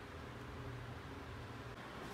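Faint room tone: a steady hiss with a low hum underneath, and no distinct sound event.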